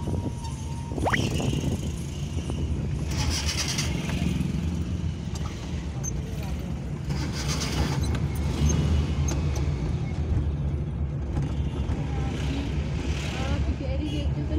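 Bus engine and road noise heard from inside the cabin, a steady low rumble while driving in slow traffic, with brief hissing sounds a few seconds in and again later.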